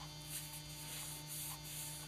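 Steady electrical hum, with faint rubbing of paper as fingers press a glued strip down onto an envelope.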